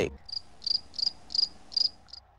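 Cricket chirping sound effect: about five short, high, evenly spaced chirps, the stock 'crickets' gag marking an awkward silence.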